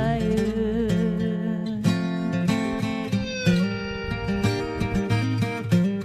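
Instrumental outro of a country backing track: strummed acoustic guitar with other instruments, a held wavering note at the start, then a run of picked and strummed chords.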